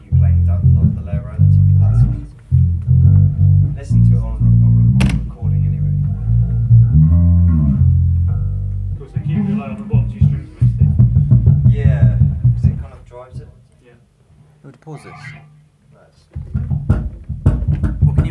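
Electric guitar and bass guitar playing a loud, low riff together. The playing drops away about two-thirds of the way through and starts up again near the end.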